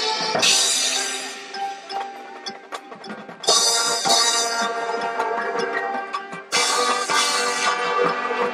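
High school marching band playing its field show: full-band brass-and-percussion hits swell in about half a second, three and a half and six and a half seconds in. Between them, quieter passages carry the front ensemble's mallet percussion (marimba, xylophone, glockenspiel) over held notes.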